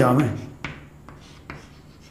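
Chalk writing on a blackboard: three short, sharp taps and strokes of the chalk, spaced under half a second apart.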